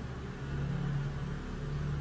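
Low steady hum and room tone from the recording setup, with a faint low drone.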